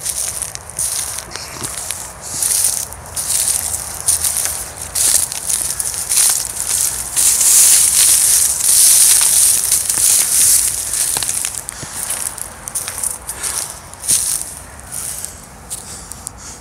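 Dry grass and dead reed stalks crackling and rustling close to the microphone as someone walks through them, loudest around the middle.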